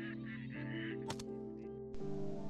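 Waterfowl calling in a few short honking calls during the first second, over steady background music, with a single sharp click about a second in.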